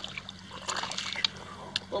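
Water sloshing and trickling against the side of a boat, with a few small clicks and knocks.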